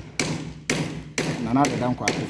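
Hammer blows from roofing work, sharp knocks about two a second, with a man talking over them.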